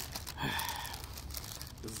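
Paper burger wrapper crinkling and rustling as it is handled and pulled open, in many small crackles.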